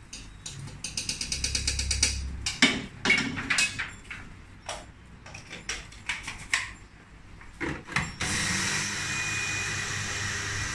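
A metal spoon scraping and knocking against a wok as toasted sesame seeds are cleared out, a quick even run of scrapes followed by scattered knocks. About eight seconds in, a small electric grinder starts and runs steadily, grinding the sesame.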